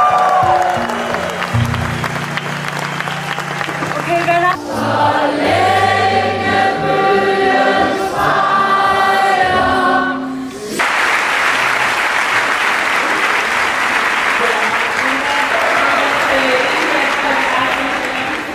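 A large crowd singing together over music with a bass line, then, after an abrupt change, a long stretch of applause and cheering.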